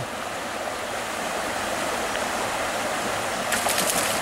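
Creek water running steadily over rapids. Near the end, splashing as a hooked trout thrashes at the surface.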